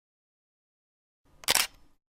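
A single camera-shutter click used as a sound effect, one short snap about one and a half seconds in after silence.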